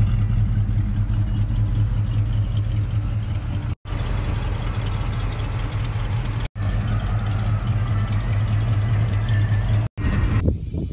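1970 Oldsmobile Cutlass Supreme's engine idling steadily with an even low rumble. The sound cuts out for an instant twice, at splices.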